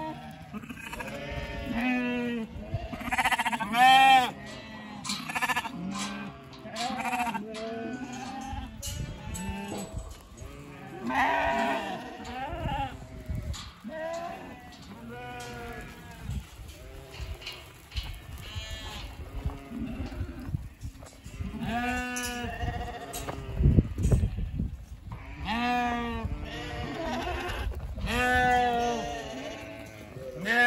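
A mob of first-cross wether lambs bleating, many wavering calls overlapping almost without pause. A brief low rumble about three quarters of the way through is the loudest moment.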